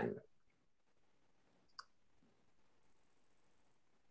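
A single computer-mouse click about two seconds in, then a faint, steady, high-pitched electronic whine for about a second near the end.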